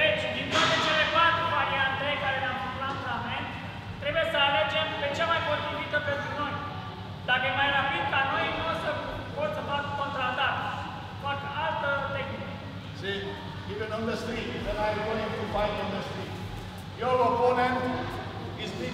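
Speech: a man talking, with the echo of a large hall.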